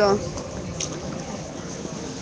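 A man's voice ends on a short word at the start, followed by steady outdoor background noise with a faint click about a second in.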